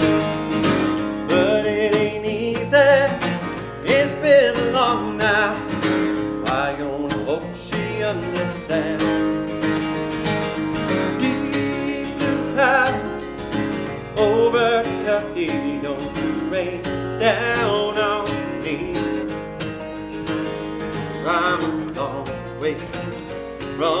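A steel-string acoustic guitar strummed in a steady country-folk rhythm, with a man singing lines over it every few seconds.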